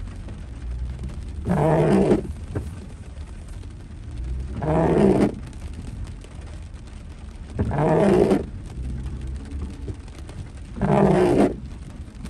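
Car windshield wipers sweeping across a rain-wet windshield on an intermittent setting: four sweeps about three seconds apart, each a short pitched judder of the rubber blade on the glass, over a steady low hum.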